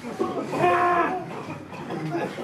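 A person's long, drawn-out shouted call about half a second in, rising and then falling in pitch, followed by quieter voices.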